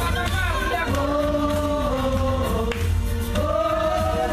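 Gospel music: several voices singing together in long held notes.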